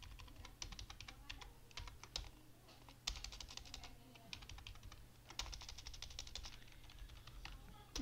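Computer keyboard typing, faint, in several quick runs of keystrokes with short pauses between.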